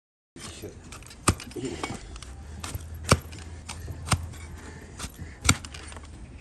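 Flat steel paring blade slicing through a donkey's hoof horn, making sharp, crisp cuts: four louder ones a second or two apart, with smaller ones between.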